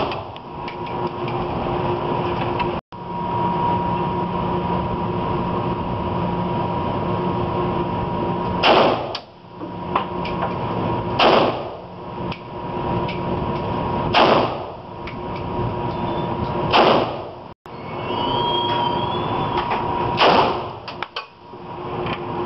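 AK-47 rifle fired in single, well-spaced shots, five in all, about two and a half to three and a half seconds apart, each with a short echo off the walls of an indoor range. A steady hum runs underneath.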